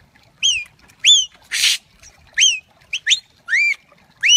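Handler's whistled commands to a herding border collie: six short, loud whistle notes, each rising then falling in pitch, with a short hiss about a second and a half in.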